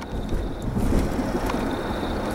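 Steady low rumble of a car's cabin noise while driving.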